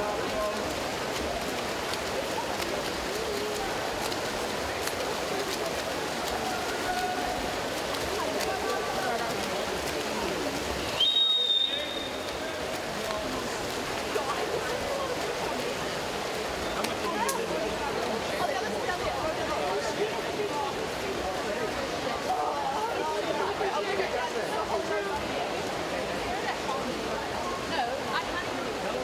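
Indoor swimming pool during a freestyle race: a steady murmur of spectators' voices mixed with the splashing of swimmers. About eleven seconds in, a short, high-pitched tone sounds once.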